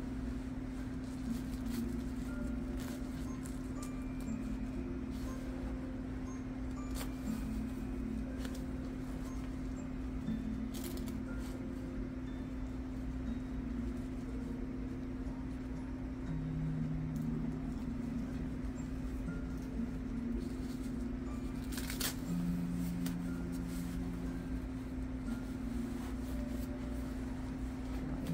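A steady low hum, with occasional soft clicks and rustles as the tabs of a disposable diaper are fastened and adjusted on a doll.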